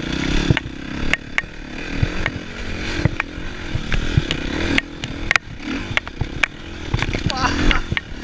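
Dirt bike engine running under load, its pitch rising and falling with the throttle and revving up near the end, with repeated sharp knocks and clatter from the bike riding over rocks and ruts.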